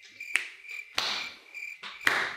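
Cricket chirping sound effect: a high, thin chirp repeating about four times a second, the classic 'crickets' cue for an awkward silence. Three sharp clicks stand out over it, the loudest at about one second in.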